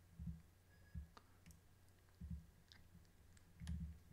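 Near silence: room tone with four faint low thumps and a few soft clicks.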